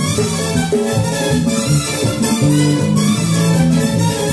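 Salsa music playing loudly, with a moving bass line.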